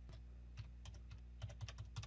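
Computer keyboard typing: a run of faint, quick key clicks as a seven-digit number is keyed in, the clicks coming closer together in the second half.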